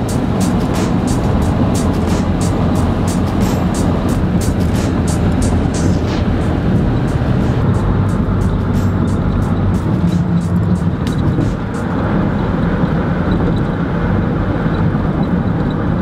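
Steady road and engine noise inside a moving taxi's cabin, with a patter of clicks through roughly the first half.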